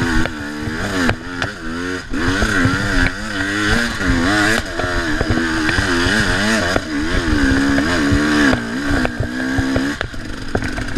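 Dirt bike engine revving up and down in quick, repeated throttle bursts as the bike is ridden up a forest trail, with sharp knocks and rattles from the bike over rough ground.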